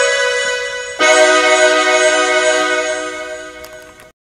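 Digital keyboard playing chords in B major: a held chord, then a new chord struck about a second in and left to ring, fading away.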